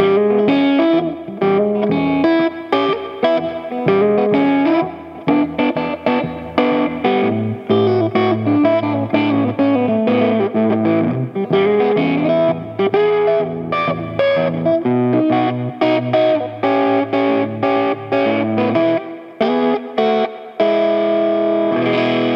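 Electric guitar, a Telecaster-style solid body, fingerpicked in a delta blues groove: a steady, repeated low bass under double stops, ending on a held chord near the end.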